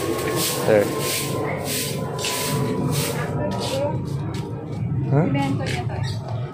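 Stick broom of thin coconut-leaf ribs (walis tingting) sweeping a concrete path in quick strokes, about two a second, which turn lighter and shorter about halfway through.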